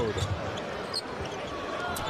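Arena crowd noise under live basketball play, with a basketball being dribbled on the hardwood court.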